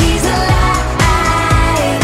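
A recorded upbeat pop-style children's worship song: singing over a steady beat of about two beats a second.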